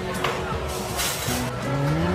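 Background music, with a short crunch about a second in as a crisp, sesame-crusted pastry is bitten into.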